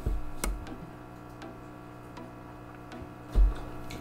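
Close-miked mouth sounds of chewing food: a few scattered soft clicks, with one low thump about three and a half seconds in, over a steady low electrical hum.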